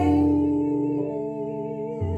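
A woman singing a long held note with vibrato into a microphone, with steady instrumental notes underneath.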